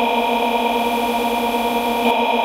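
Loud, steady electronic buzz made of several fixed tones stacked together, the stuck, frozen-audio noise of a program crash, with a slight hitch near the end.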